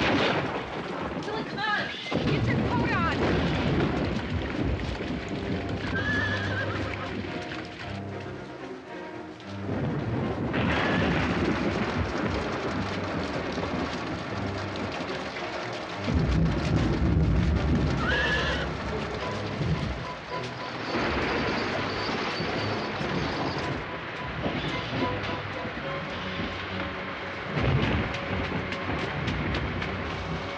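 Movie soundtrack of a night rainstorm: steady rain with thunder, the heaviest rumble a little past halfway. A horse whinnies twice, with music underneath.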